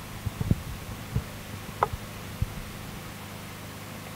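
Low steady electrical hum in the microphone's sound, with a few soft low thumps and a faint click in the first half, such as come from a handheld microphone being shifted in the hand.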